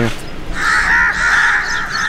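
Birds calling: a loud run of calls in quick succession, starting about half a second in.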